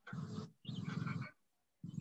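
A person imitating snoring with the voice: two rough, rasping snores, the second a little longer, acting out a character falling asleep.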